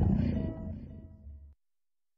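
The outro of a UK hip-hop track fading out: a low rumble with two faint short tones above it, cutting off abruptly about one and a half seconds in.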